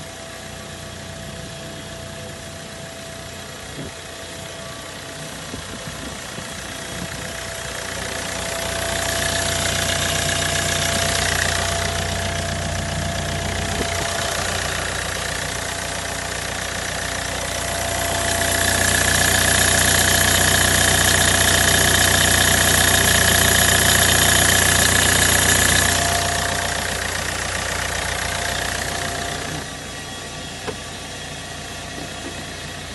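A 2008 Hyundai i30's diesel engine idling in the open engine bay. It grows louder in two stretches, about nine to twelve seconds in and from about eighteen to twenty-six seconds in, with a steady high whine over it in the second stretch.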